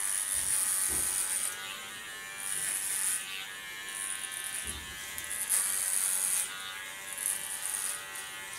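Electric hair clipper with a comb attachment running with a steady buzz while shaving a woman's nape. It makes about five passes through the hair, each adding a brighter cutting sound over the hum.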